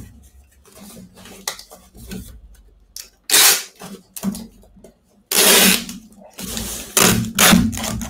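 Scotch packing tape pulled off a handheld tape gun and run across a small cardboard box to seal it. About three seconds in come several noisy tape runs of about half a second each, after light taps and handling of the box.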